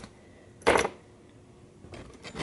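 Handling noise from the video camera as it is moved and set down: one short clatter about two-thirds of a second in, otherwise quiet.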